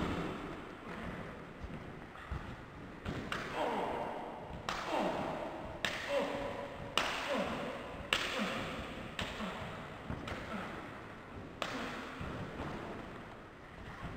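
Bodies and feet thudding on gymnastics mats during a wrestling scuffle, mixed with shouts and yells that rise and fall in pitch.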